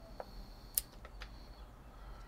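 Small pruning shears snipping leaves off a young desert rose (Adenium arabicum): a few faint, short clicks, the sharpest a little before halfway.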